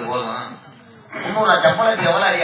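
A man's voice speaking through a stage microphone and PA, with a short pause in the middle.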